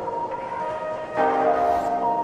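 Instrumental background music with held notes, the chord changing a little over a second in.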